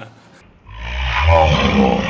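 A man's loud, excited whoop and laughter, starting about half a second in.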